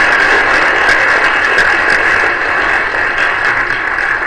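Audience applauding, a dense steady clapping that begins fading near the end.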